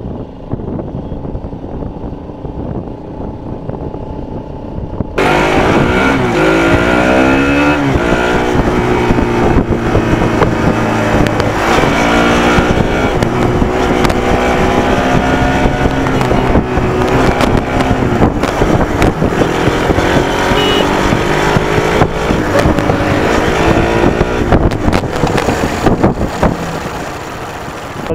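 Motorcycle engine running on the road, muffled and quieter at first. After about five seconds it turns abruptly louder, and the engine note climbs and falls again and again as the bike accelerates and eases off.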